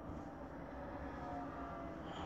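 Quiet background noise: a steady low rumble with faint hiss.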